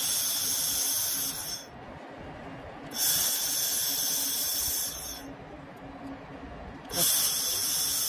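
A 1500 W handheld fiber laser welder with wire feed welding stainless steel, giving three bursts of high, steady hiss of about two seconds each, with a quieter low hum between them.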